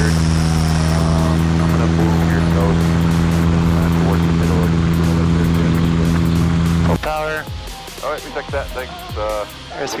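Cessna 150's Continental O-200 four-cylinder engine and propeller running at a steady pitch as the plane rolls on the runway. About seven seconds in, the engine sound cuts off abruptly and talk follows.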